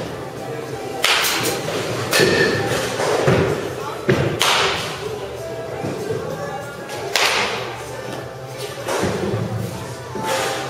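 Baseball batting practice in an indoor cage: about five sharp, echoing impacts at uneven intervals, a bat hitting pitched balls and the balls striking the cage.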